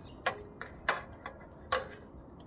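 Sharp, light clicks and ticks of a high-pressure sodium lamp's glass tube and screw base knocking against a metal ledge as it is handled: three louder clicks and a couple of faint ones.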